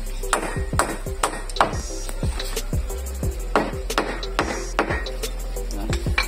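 A steel chisel driven with a hand-held stone, used as a mallet, cutting a hole into a wooden boat part: about a dozen sharp, irregular knocks.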